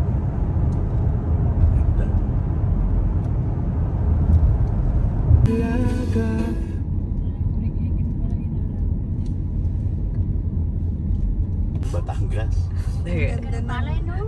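Steady low rumble of road and engine noise heard inside a moving car's cabin at highway speed. A brief steady tone sounds about five and a half seconds in, and voices come in near the end.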